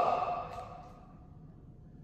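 Quiet indoor room tone: the tail of a spoken word dies away in the first half second, leaving a faint steady hum.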